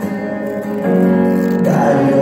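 Contemporary praise and worship music with steady held notes, stepping up in loudness a little under a second in.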